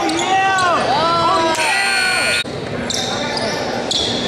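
Basketball shoes squeaking on a hardwood gym floor during play, several quick rising-and-falling squeaks in a row, in a large echoing hall. A shrill steady tone sounds for under a second near the middle, then the sound changes abruptly.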